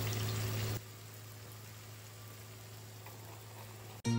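Tomato masala bubbling and sizzling in a frying pan on a gas burner, over a steady low hum. About a second in the sound drops to a quieter, even hiss.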